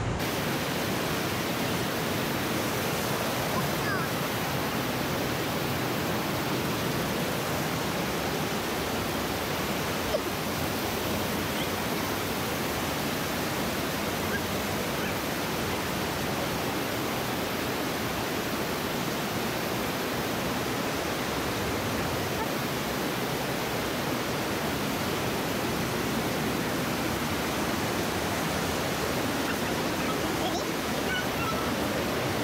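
Fast river water rushing and splashing over boulders in whitewater rapids: a steady, unbroken noise.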